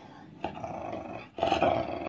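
An animal's voice, most like a dog's: calls about a second apart, the last and loudest coming near the end.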